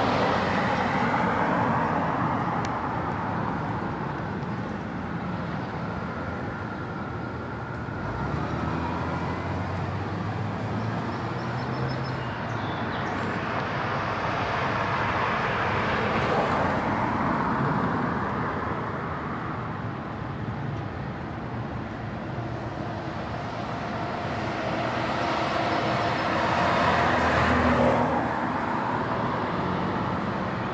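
Cars passing on a road, each one swelling and fading away: one right at the start, another about halfway through and a third near the end.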